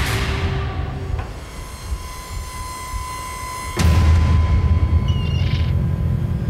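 Tense background score: a sudden whooshing hit, then a thin held high tone over a low drone, and a second louder hit about four seconds in, after which the low rumble swells.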